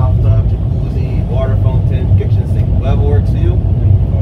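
Passenger boat's engine running with a steady low rumble, under a man talking.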